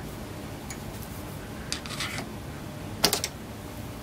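Adjustable steel wrench on a generic AR-15 muzzle compensator, giving a few faint metallic clicks and taps as it is worked to break the threaded compensator loose from the barrel, the sharpest click about three seconds in.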